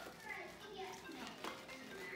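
Faint voices over quiet background music, with held tones under the talk.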